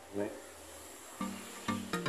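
Background music, faint at first, then a run of pitched notes with sharp starts, about two to three a second, from about a second in. There is a brief vocal sound near the start.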